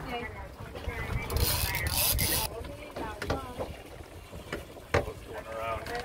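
Faint voices over wind and low boat rumble, with a stretch of high hiss about a second and a half in and a single sharp knock near the end.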